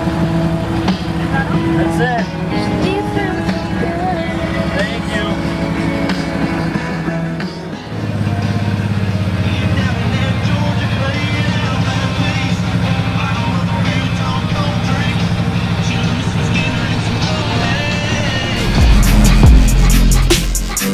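Can-Am Maverick MAX side-by-side's V-twin engine running at low speed, mixed with music from its roof-mounted Hifonics THOR soundbar. About eight seconds in the sound shifts to a deeper, steadier hum. Near the end, loud bass-heavy electronic music cuts in.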